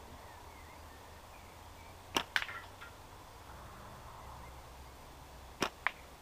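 Two slingshot shots, about three and a half seconds apart. Each is a sharp snap of the rubber bands on release, followed a fraction of a second later by the crack of the shot hitting the target; the first hit rings briefly.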